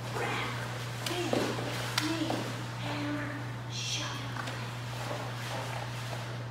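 Faint, indistinct voices over a steady low hum, with two sharp taps about one and two seconds in.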